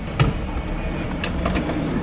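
Petrol-station ambience while a car is being fuelled: a steady low hum and rush, with one sharp click about a fifth of a second in.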